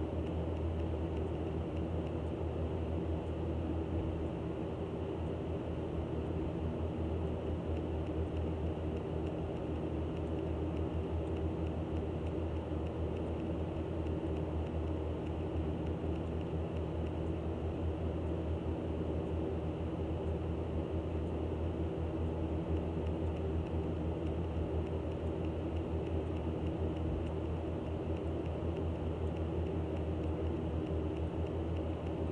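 A steady low mechanical hum with a constant drone, unchanging throughout.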